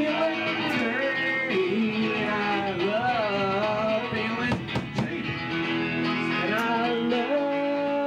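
Live band music: a man singing into a microphone over electric guitar and drums, with a few sharp drum or cymbal hits about halfway through.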